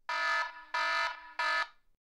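Wrong-answer buzzer sound effect: three short buzzes, the last one shortest, marking an answer as wrong.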